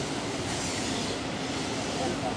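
Steam locomotive C56 160 and its coaches running close by out of sight: a steady rush of steam and rail noise, with louder hissing for about a second shortly after the start.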